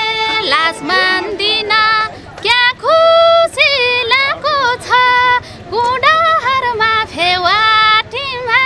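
A woman singing a Nepali folk song solo, in held phrases with ornamented bends and glides and short breaks for breath between them.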